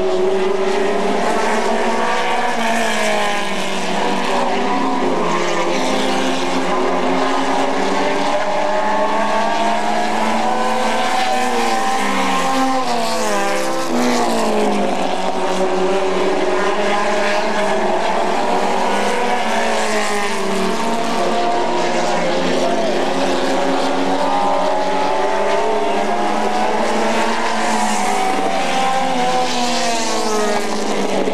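Several Pro Stock race car engines running hard at racing speed. Their overlapping engine notes rise and fall in pitch as the cars accelerate and ease off, with one note falling steeply about halfway through.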